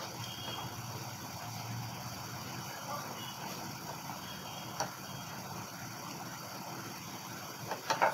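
Faint rustling and small clicks of thin wires being twisted together by hand, over a steady low background rumble, with one sharper click about five seconds in.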